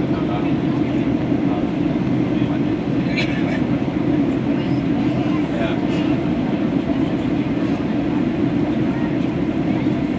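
Steady cabin drone of a Boeing 737 on approach: jet engine and airflow noise heard inside the cabin. Faint passenger voices come through it at times.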